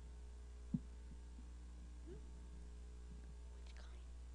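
Quiet pause filled by a steady low electrical hum from the sound system, with one short thump on the handheld microphone about a second in and faint murmured voices.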